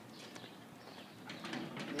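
Faint bird calls, with pigeon-like cooing building toward the end.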